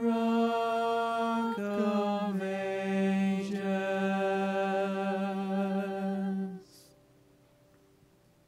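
Mixed vocal quartet singing a cappella, holding sustained chords: the harmony shifts twice in the first couple of seconds, then settles on a long final chord that cuts off about six and a half seconds in, ending the song.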